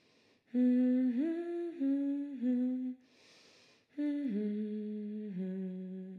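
A voice humming a slow melody with closed lips, in two phrases with a breath drawn between them about three seconds in. The second phrase steps downward in pitch.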